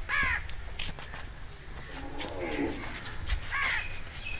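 Bird calls: a short call right at the start and another just before the end, with a lower, longer call in the middle, over a low background rumble.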